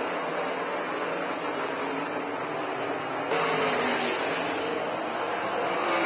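Winged sprint cars racing on a dirt oval, several engines running together at speed. The sound grows louder and brighter about three seconds in.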